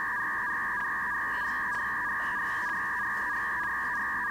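A steady, unchanging electronic tone, a sound effect added in editing, that starts and cuts off abruptly.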